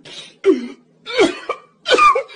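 A person coughing hard in a fit, four or five harsh, strained coughs in quick succession.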